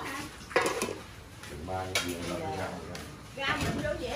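Metal pot lids and dishes clattering, with a sharp knock about half a second in and another near the middle, over people talking.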